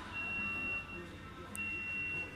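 An electronic warning beeper sounding a single high-pitched steady tone in long beeps, about one every second and a half: two beeps, the second starting about one and a half seconds in.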